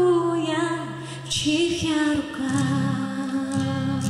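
A woman singing to her own acoustic guitar, holding out the end of a line in Russian. From about two seconds in the voice stops and the strummed guitar goes on alone.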